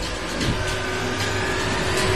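Cinematic trailer sound design: a dense, steady rushing swell over a low drone, with thin sustained tones coming in about half a second in.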